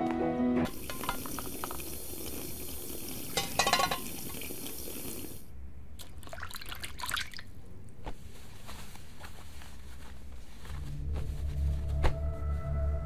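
Kitchen tap running into a sink for about five seconds, then cutting off, followed by scattered clinks of glasses and dishes being washed by hand. Soft background music plays underneath.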